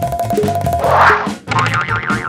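Upbeat background music with a steady bass line. A short noisy swell comes about a second in, followed by a brief drop in level.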